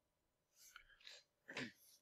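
Near silence with the lecturer's faint breathing at the microphone: a soft intake from about half a second in, then a short, slightly louder breath noise that falls in pitch about one and a half seconds in.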